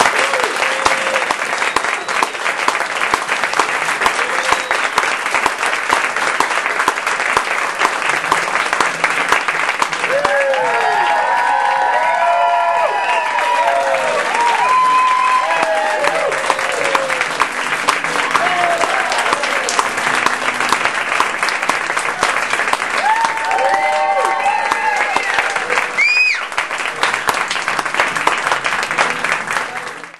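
Audience applauding and cheering, starting suddenly as the piano song ends. Whoops and shouts rise above the clapping about a third of the way in and again near the end.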